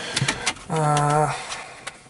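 A man's drawn-out "a", preceded by a few short clicks and followed by one more near the end.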